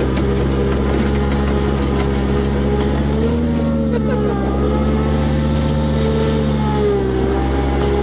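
Grasshopper zero-turn mower's engine running steadily under way, its pitch dipping and rising slightly a couple of times. The mower has been rebuilt after fire damage and is running again.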